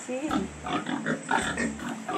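Several young pigs grunting in short, irregular bursts.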